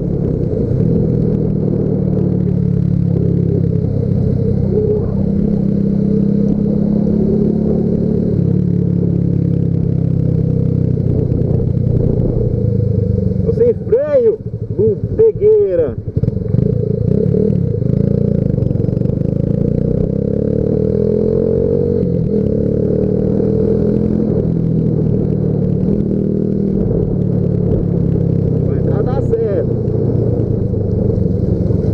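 Yamaha Factor 150's single-cylinder engine running steadily under way, with wind and road noise. About halfway through comes a short stretch of quickly rising and falling pitch, and another brief one near the end.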